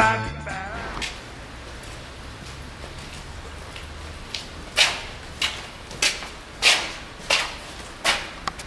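Footsteps of people walking on a paved path: sharp, evenly spaced steps about every 0.6 s, starting about five seconds in. A music track with singing cuts off in the first second.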